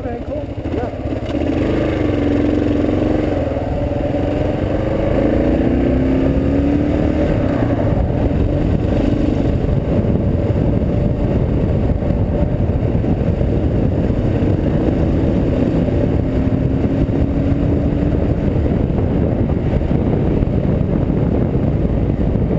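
Dual-sport motorcycle engine pulling away and accelerating, its pitch rising a few times through the gears early on and again briefly later, then running at a steady speed.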